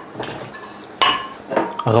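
Sliced vegetables tipped off a plate into a glass pot of water, with a sharp clink of crockery and glass about a second in.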